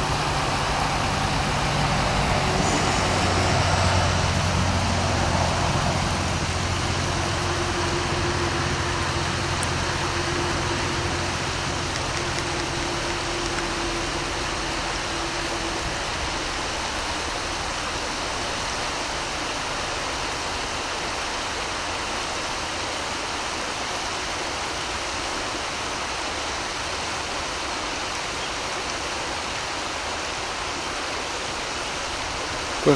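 Steady rush of flowing river water, with a low droning hum that is strongest in the first few seconds and fades away by about halfway through.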